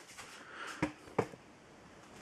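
Two light taps about a third of a second apart, faint against quiet room noise.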